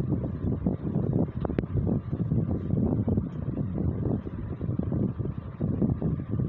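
Irregular low rumbling noise on a handheld phone's microphone, the rubbing and buffeting of the phone being moved about close to clothing.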